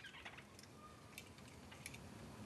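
Near silence with a few faint, light clicks, spaced about half a second apart, from lineolated parakeets climbing a wooden ladder. There is a faint chirp in the first half second.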